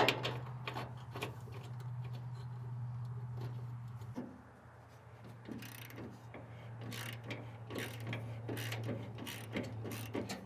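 Ratchet wrench clicking in quick runs as a shock absorber mounting bolt is run in and snugged by hand, mostly in the second half, with a few sharper metal clicks near the start. A steady low hum runs underneath.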